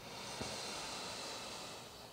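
A person drawing a long, deep breath in, a faint steady hiss lasting about a second and a half.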